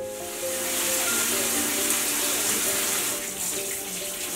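Water running steadily from a kitchen tap into a stainless-steel sink, as a continuous hiss, under soft background music with held notes.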